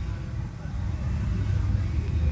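Low, steady rumble of a car heard from inside the cabin.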